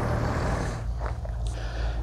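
Steady low outdoor rumble with no clear events in it.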